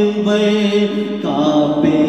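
Vocal naat (Urdu devotional song) in a chant-like style: voices hold long, steady notes that move to a new pitch a little over a second in.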